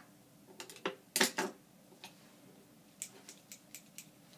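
Scattered short clicks and taps, like small objects being handled: a few sharper clicks about a second in, then a quick run of about five light ticks near the end.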